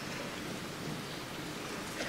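Steady, even background hiss of room noise with no distinct events.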